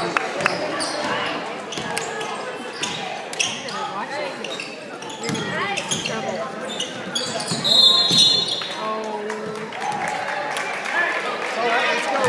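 Basketball game in a gym hall: a ball bouncing on the hardwood court, voices of players, bench and spectators calling out, and a referee's whistle blown once, about eight seconds in.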